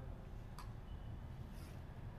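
Quiet room tone with a steady low hum and one faint short click about half a second in.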